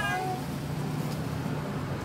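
Steady low hum of a car engine running, heard from inside the cabin. In the first half second a drawn-out, falling voice fades away.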